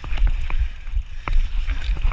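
Orange Five full-suspension mountain bike descending a rocky slate trail, its tyres and frame rattling in irregular sharp knocks over the stones. Under it is a heavy, steady wind rumble on the chest-mounted camera's microphone.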